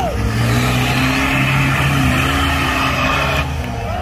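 Off-road 4x4's diesel engine running at high revs under heavy load as it climbs a steep mud mound, easing off near the end.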